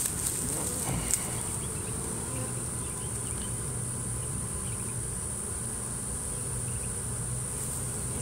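A honeybee swarm buzzing at close range: an even, low, continuous hum, with a steady high-pitched whine above it and one small click about a second in.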